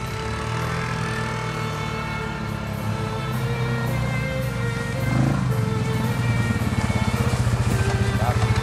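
Background music over a quad bike's (ATV's) engine running. The engine grows louder in the second half, with a quick even pulsing.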